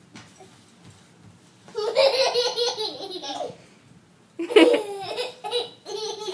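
A baby laughing in two long bouts, the first starting a little under two seconds in and the second about four and a half seconds in.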